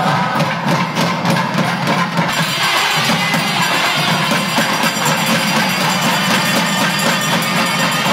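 Loud Hindu temple puja music: drums with dense, rapid metallic ringing and jingling of bells and cymbals, growing thicker after about two seconds.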